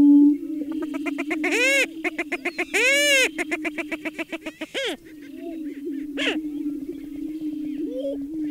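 Prairie chickens calling: a steady low drone of air-sac booming throughout, with a fast run of cackling notes from about one to five seconds in. Two shrill calls rise and fall within the run, and another short shrill call comes just after six seconds.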